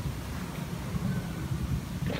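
Steady low rumbling noise on the microphone, without speech.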